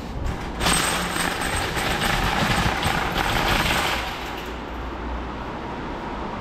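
Metal shopping cart rattling as it is pushed across the store floor. The rattle starts abruptly just under a second in, is loud for about three seconds, then drops back to a lower steady background.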